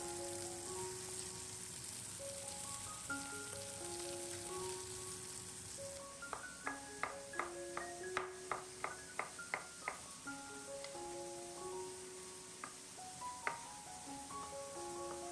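Light background music with a simple melody. About halfway in, a knife chops on a wooden cutting board, about ten quick strokes at roughly three a second, slicing garlic cloves.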